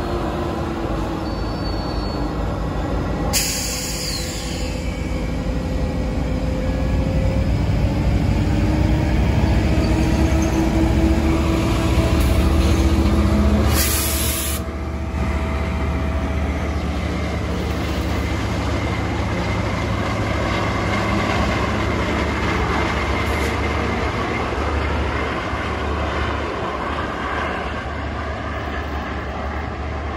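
GO Transit bilevel commuter train running past on the adjacent track, pushed by its diesel locomotive: a steady rumble of wheels on rail with engine drone, loudest about halfway through as the locomotive goes by.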